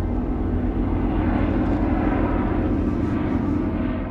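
Jet fighter engine noise of an aircraft flying overhead: a steady rushing sound that swells slightly.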